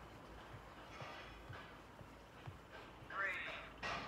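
Faint, heavy breathing of a woman doing fast mountain climbers on a mat, with soft low thuds about once a second as her feet land. Near the end comes a short, louder strained vocal sound as she stops.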